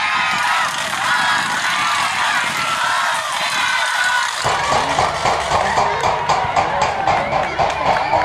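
Several men's voices talking and shouting on a football pitch. About four seconds in, the sound changes abruptly to a busier, louder mix of voices over a fast, even ticking beat.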